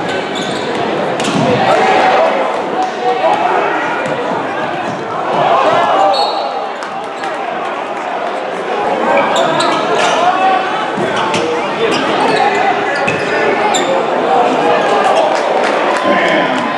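Game sound in a basketball gym: a ball being dribbled on a hardwood court, with repeated sharp knocks, over the steady, indistinct chatter of the crowd echoing in the hall.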